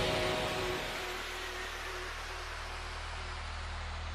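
Electronic trance music winding down: a falling noise sweep fades out over the first second, leaving a steady low bass drone with a faint hiss.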